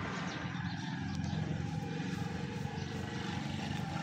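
A steady, low engine hum, running evenly without change.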